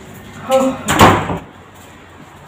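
A short burst of voice, then a sharp knock of a door about a second in, ringing briefly.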